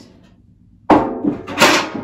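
Old galvanized metal buckets clanking as they are handled and set down: a sudden metal knock about a second in, then a second clank just over half a second later.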